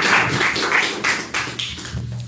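A congregation clapping in rhythm, about four claps a second, fading away over the second second.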